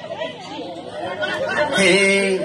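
Chatter: several voices talking over one another, with a louder voice coming in near the end.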